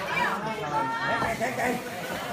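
Voices of people talking around the ring, overlapping in a general chatter.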